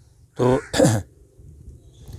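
A man clearing his throat: two short voiced sounds in quick succession about half a second in, the second falling in pitch.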